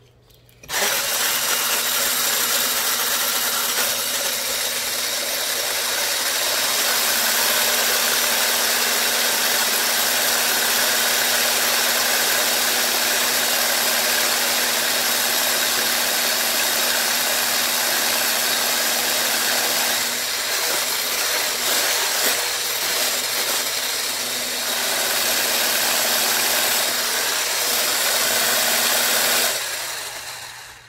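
Electric hand blender with a whisk attachment running steadily, whisking a liquid cake batter in a tall plastic beaker. The motor starts about a second in and cuts off just before the end.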